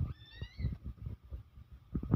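A short high-pitched cry, about half a second long, rising then levelling off, right at the start, over low muffled thumps and rumble.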